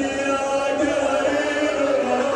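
Men's voices chanting a devotional recitation in long, held notes.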